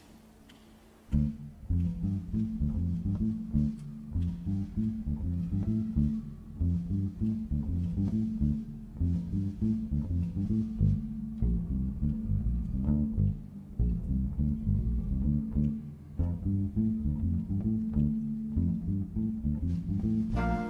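Electric bass guitar playing an unaccompanied bass line that opens a jazz tune. It comes in about a second in and plays a rhythmic run of low plucked notes.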